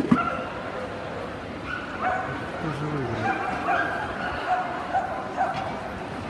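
A dog whining in a series of short, high-pitched held notes, over the chatter of a busy indoor show hall.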